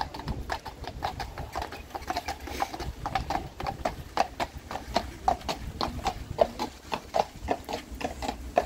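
Hooves of a pair of carriage horses clip-clopping on a tarmac road, an uneven run of sharp strikes several times a second.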